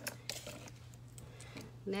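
Faint light clicks and taps of plastic nail swatch sticks being handled and set down on a tabletop, over a steady low hum.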